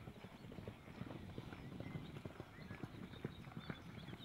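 Horse hoofbeats on grass: a quick, irregular run of dull thuds.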